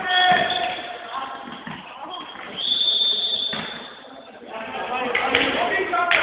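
Indoor handball game: players' voices calling out over the thud of the handball bouncing on the hall floor, with a single high whistle blast lasting about a second near the middle.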